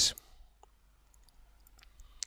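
A few faint, sharp computer mouse clicks in near quiet, as an item is selected in the software, just after the last spoken word fades.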